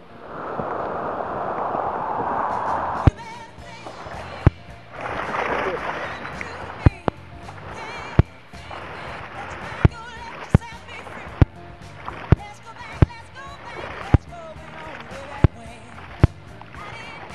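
Surf rushing and splashing around a surfboard riding white water, loudest for the first three seconds, then quieter rushing broken by sharp knocks about once a second. Background music plays underneath.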